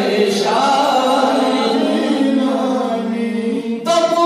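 A man's voice chanting a manqabat, an Urdu devotional praise poem, unaccompanied, drawing out long held notes, with a short break for breath just before the end.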